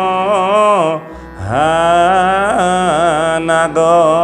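A man's voice chanting a verse in a slow melodic style, holding long wavering notes. It breaks off about a second in, then comes back with a rising glide into the next held note.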